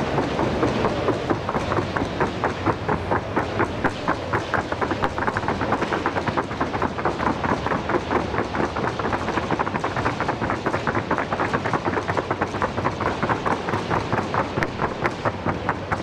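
Hoofbeats of several Colombian trote y galope horses trotting around the arena: a quick, even, continuous clatter of hooves.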